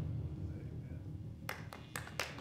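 A low room rumble, then a few scattered hand claps from the congregation starting about one and a half seconds in.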